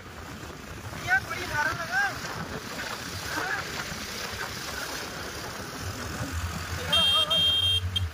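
Wind rushing over the microphone and engine and road noise from a moving two-wheeler, with a vehicle horn beeping twice briefly near the end.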